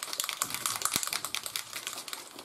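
A small bottle of acrylic gloss varnish being shaken hard, the mixing ball inside rattling in a fast, steady stream of clicks.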